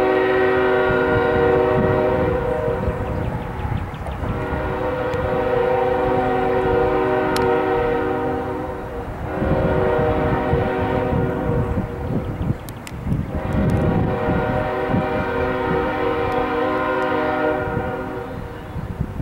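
Freight locomotive air horn sounding a chord of several tones in four blasts, long, long, shorter, long: the standard grade-crossing warning. A low rumble of the approaching train runs beneath it.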